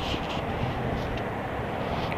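Steady low background noise, with faint rustles from the plastic wire basket being turned and handled.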